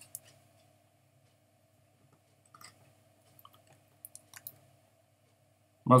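Faint scattered clicks and crinkles of a shrink-wrapped plastic DVD case being handled, mostly in the middle of the stretch, over a steady low hum.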